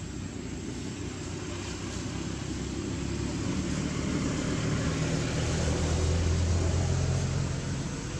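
A motor vehicle's engine hum that grows louder over a few seconds and then falls away near the end, over a steady background hiss.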